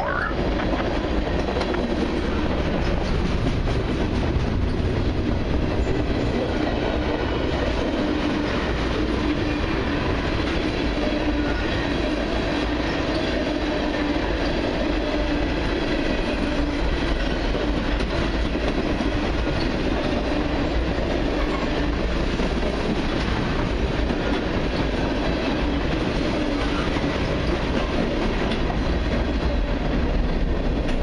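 Freight train cars rolling past at steady speed, a mix of tank cars and covered hoppers: a continuous, even rumble of steel wheels on the rails that does not let up.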